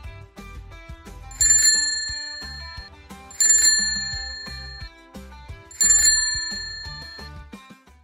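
Three bright bell chimes about two seconds apart, each struck sharply and ringing out over a second or so, over soft background music with a bass line.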